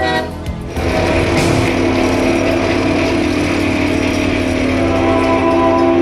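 A brief rapid rattling, then about a second in a locomotive's multi-chime air horn, a Nathan K5HLL, sounds one long steady chord that holds to the end.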